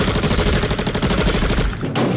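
Rapid automatic gunfire from the shooters' weapons: a continuous stream of shots that stops near the end.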